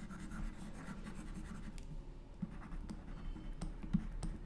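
Faint scratching of a stylus writing on a pen tablet, with a few light taps later on, the sharpest just before the end.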